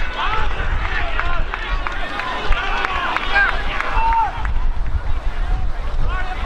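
Players' voices shouting and calling across an open football pitch during play, over a steady low rumble of wind on the microphone.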